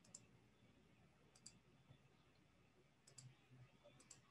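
Near silence with a few faint computer mouse clicks: a single click near the start, then a quick double click about a second and a half in and another about three seconds in.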